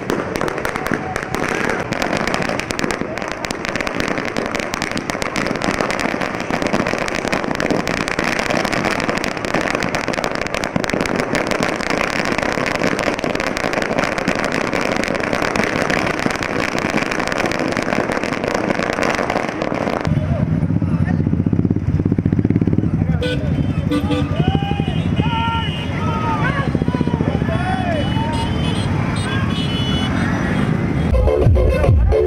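A long string of firecrackers crackling continuously for about twenty seconds. Then the sound changes abruptly to a steady low hum of motorcycle engines, with shrill rising-and-falling whistles over it.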